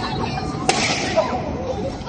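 A single sharp crack about two-thirds of a second in, with a smaller snap half a second later, over the chatter of an outdoor crowd.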